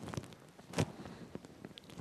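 Quiet room with a few soft, short knocks and shuffles, the loudest just before a second in.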